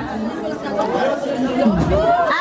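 A crowd of women's voices chattering and calling out over one another.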